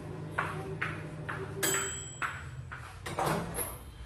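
Kitchen clatter: a string of light knocks and clicks, with one short ringing metallic ping about one and a half seconds in, over a steady low hum.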